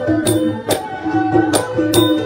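Khmer traditional wedding music played by a live ensemble: a pitched instrumental melody over a steady beat of sharp strikes, about two to three a second.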